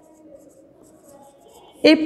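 Marker pen writing on a whiteboard: faint short strokes. A woman's voice starts near the end.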